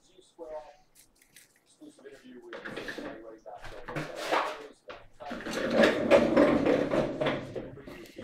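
Indistinct talk from a televised football broadcast playing in the background, louder and denser in the second half.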